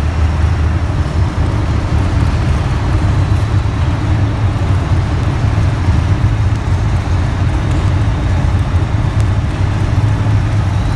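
Pulling pickup truck's engine idling with a steady, loud low rumble.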